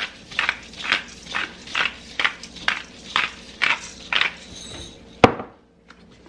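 Hand-twisted peppercorn grinder cracking pepper, about ten short grinding strokes at roughly two a second. Then a single sharp knock near the end.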